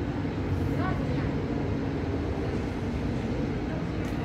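Steady low rumble and hum of an Israel Railways double-deck passenger train standing at the platform with its locomotive running.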